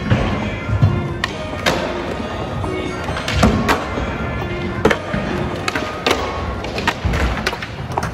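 Skateboard wheels rolling on a smooth concrete floor, with several sharp clacks of boards hitting the ground and ledges, over music.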